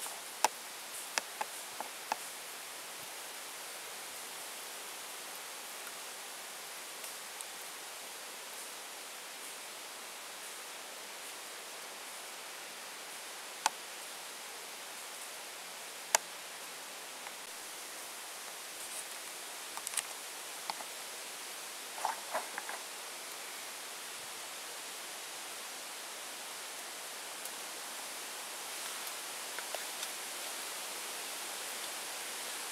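Steady hiss of wind through the leaves of the forest trees, with scattered short sharp ticks and clicks, a few bunched together about two-thirds of the way through.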